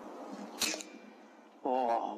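A single shot from a .22 Air Arms S510 pre-charged pneumatic air rifle, a short sharp crack about half a second in, followed near the end by a man's drawn-out, wavering exclamation.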